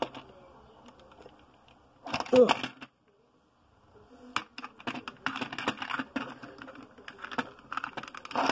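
A toy car and a plastic figurine being handled and rubbed against each other on a wooden surface: a run of quick small clicks, knocks and scrapes through the second half.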